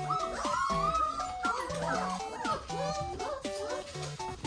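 Wolfdogs whining, many short rising and falling cries one after another, as a tray of food is brought to them, over background music with a plinking melody.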